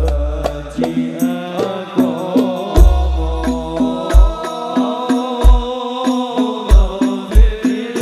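Islamic devotional song (sholawat) sung to a gliding, melismatic melody over hand drums, with deep bass-drum thumps and sharp drum strikes in a loose repeating rhythm, heard through a loud public-address system.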